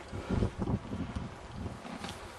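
Strong wind buffeting the microphone, a gusty low rumble that peaks about half a second in.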